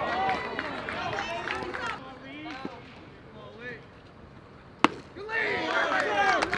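A baseball bat striking a pitched ball: one sharp crack near the end, followed at once by excited shouting voices. Voices chatter before it.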